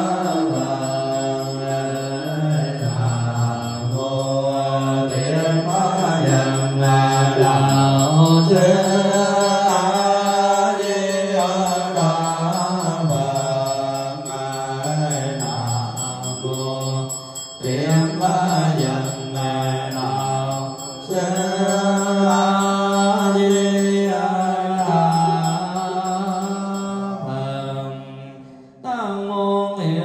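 Buddhist chanting: a voice sings a slow, drawn-out melodic chant with long held notes. It breaks off briefly near the end and resumes.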